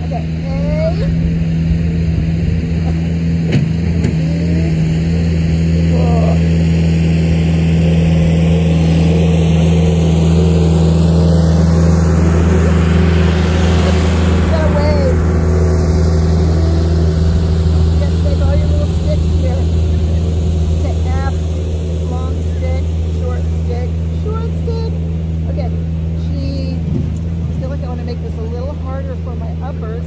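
John Deere farm tractor with a front loader driving past, its engine running at a steady speed. It grows louder to its closest point about halfway through, then fades.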